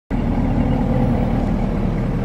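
A motor vehicle engine idling steadily: an even, low rumble.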